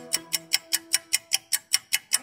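Fast, even ticking of a clock-style timer sound effect, about five ticks a second, under a held musical note that fades out about a second and a half in.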